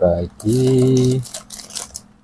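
Small plastic bags of spare parts crinkling and rustling in the hands as they are picked through, in short irregular crackles.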